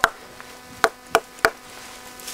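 A stone knocked against the burls of an old olive trunk: one sharp knock, then three more in quick succession from just under a second in. The blows bruise ('bleed') the live bark so that sap gathers there and new shoots sprout.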